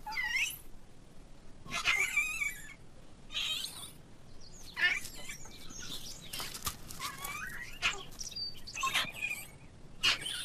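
Young Yunnan snub-nosed monkeys giving a series of short, high-pitched calls that waver up and down in pitch, about six calls spread through the few seconds.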